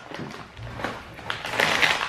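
Plastic cookie package rustling and crinkling as it is handled, with a few soft scrapes, getting busier near the end.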